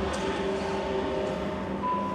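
Film soundtrack heard through a lecture hall's loudspeakers: a steady low rumble of an airliner in flight, with faint held tones, a higher one coming in near the end.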